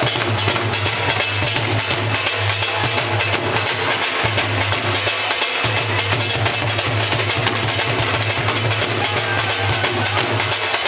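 Several Punjabi dhols played live together in a fast, continuous bhangra rhythm, with a steady low bass underneath.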